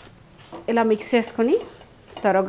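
A person's voice: a short spoken phrase about a second long, starting just under a second in.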